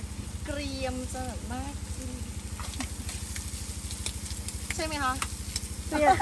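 Sliced pork sizzling in a frying pan on a portable gas stove, with a few sharp clicks of metal tongs against the pan as the meat is turned. A steady low hum runs underneath.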